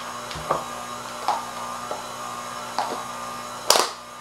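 KitchenAid stand mixer running with its flat paddle beater, mixing a wet bread dough: a steady motor whir with a few short knocks, the loudest near the end.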